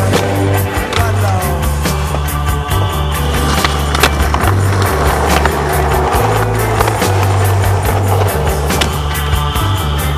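Music soundtrack with a steady beat and a moving bass line.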